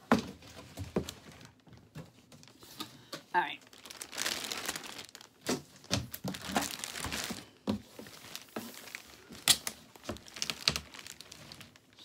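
Clear plastic packaging crinkling and rustling in irregular bursts, mixed with knocks and scrapes of cardboard as a boxed printer is pulled out and handled. There is a sharp knock at the very start and another, the loudest, late on.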